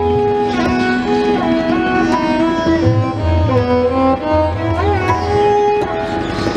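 Hindustani classical music: a bamboo flute (bansuri) and a violin play a melody that steps and slides between notes, over tabla, whose deep strokes come in short bursts through the middle.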